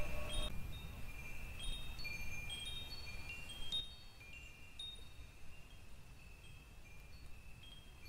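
Wind chimes ringing softly: scattered high, clear notes at uneven intervals, growing quieter about four seconds in.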